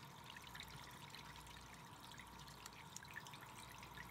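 Faint, steady running water from a bathroom tap into the sink basin, with a few soft ticks.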